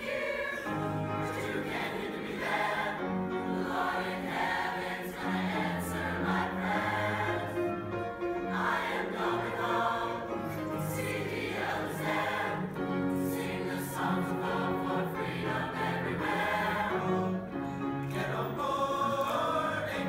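Mixed-voice high school choir singing without a break, holding long notes.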